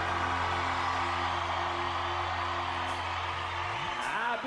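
A live country band holds its closing chord and lets it ring, with the audience cheering and whooping over it. The low bass note drops out near the end.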